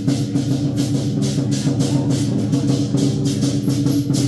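Southern Chinese lion dance percussion: a big drum beaten under cymbals clashing in a fast, steady rhythm, several clashes a second.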